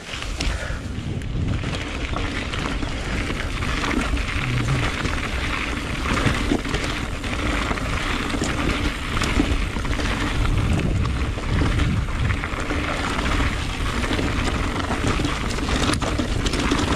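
Orbea Wild FS electric mountain bike's tyres rumbling and rattling over a rough gravel and rock trail on a descent, with steady wind noise on the microphone and small clicks from the trail.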